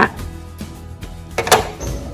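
Small craft scissors making a single sharp click about one and a half seconds in, as they snip the frayed end off a cord or are set down on the table.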